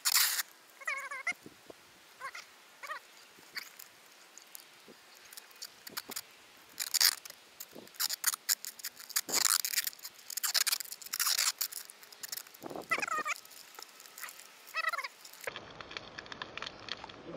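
Silver duct tape being pulled off the roll in a series of loud rasping strips, bunched between about seven and eleven seconds in, with shorter squeaky peels at other moments as it is wrapped round to hold a broken metal detector armrest in place.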